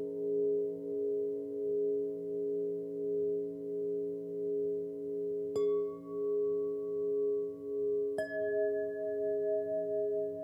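Meditation music of solfeggio chimes: several steady ringing tones that swell and fade in a slow pulse, with a new chime note struck about halfway through and another near the end, each ringing on.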